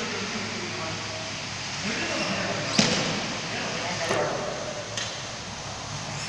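A barbell loaded with bumper plates hits the gym floor with a sharp bang about three seconds in, followed by a lighter knock about a second later.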